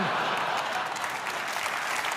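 Theatre audience applauding.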